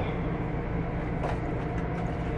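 A steady low mechanical hum with a faint brief rustle about a second in.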